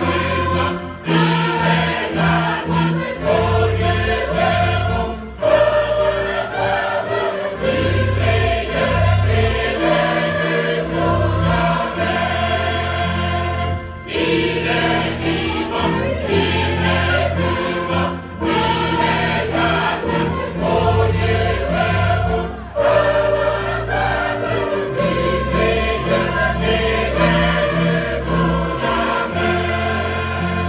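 A mixed adult choir singing a hymn with a small string ensemble, including violins, accompanying it over held bass notes. The phrases are separated by short breaks every few seconds.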